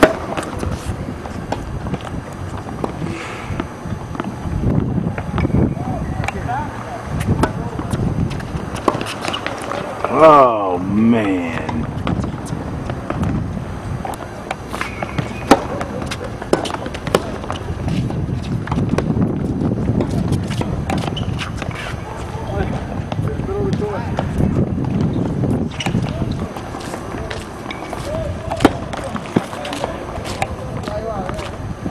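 Tennis balls struck by rackets and bouncing on the hard court, short sharp pops recurring through the rallies, over background voices talking. A loud call rises and falls about ten seconds in.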